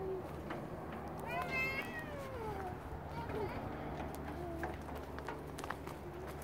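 A young child's high-pitched squeal a little over a second in, rising and then falling in pitch and trailing off lower.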